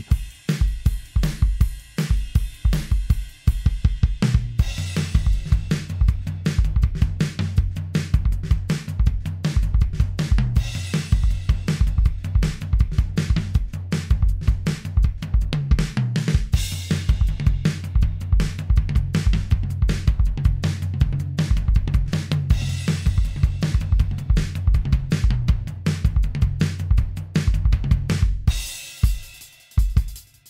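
Programmed modern RnB drum-kit beat in 4/4 at 160 beats per minute, with kick, snare, hi-hat and cymbals, played as a metronome practice track. It is sparse for about the first four seconds, then a full groove with low sustained bass notes underneath, and it thins out again near the end.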